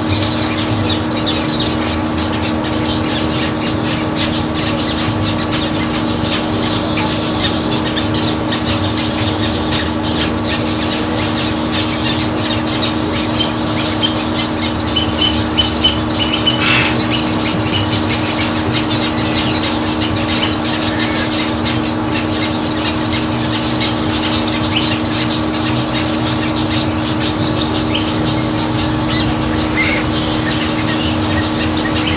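Birds calling continuously in a wading-bird rookery, a dense, irregular chatter over a steady low hum, with a few short higher calls and a sharp click about halfway through.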